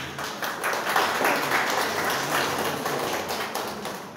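Audience applauding, strongest in the first half and tapering off near the end.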